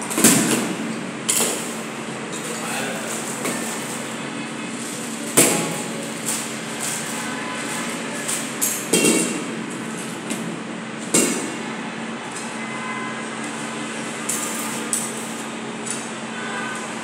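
Scattered knocks and clinks of metal hardware and hand tools being handled and fitted on a fire door leaf lying flat, with about five sharp knocks spread through the stretch. A steady low hum runs underneath.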